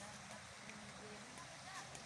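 Quiet outdoor background: a faint steady hiss with no distinct sound standing out.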